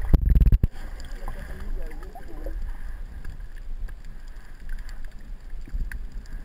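Underwater sound of shallow coastal water: a steady low rumble, with a loud muffled thump just after the start and faint wavering tones about a second or two in.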